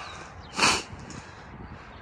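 A short burst of breath near the microphone about half a second in, a brief hiss lasting about a third of a second, over a quiet outdoor background.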